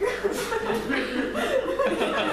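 An audience laughing together, the laughter swelling suddenly at the start and carrying on loudly.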